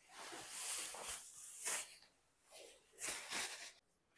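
Cloth rustling: a long length of thin saree fabric being handled and shaken out, making a run of soft swishes.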